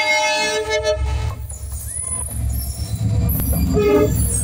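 A locomotive's multi-tone horn sounds steadily and cuts off about a second in. The heavy low rumble of the train passing close then follows, with a short horn note again near the end.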